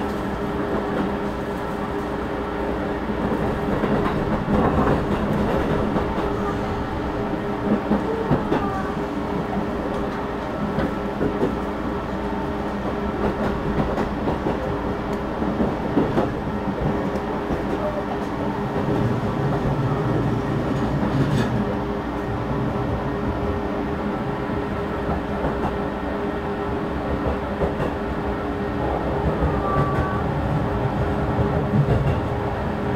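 Running noise inside a JR East 215 series double-decker electric train: a steady rumble and hum, with occasional clicks of the wheels over rail joints.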